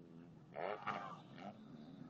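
Motocross motorcycle engines running at a distance, a faint steady pitched drone, with one louder rev about half a second in that fades again within half a second.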